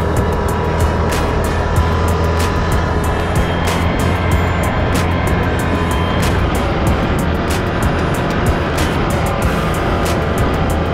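Background music with a steady beat over the running V-twin engine of a Can-Am Outlander 650 ATV.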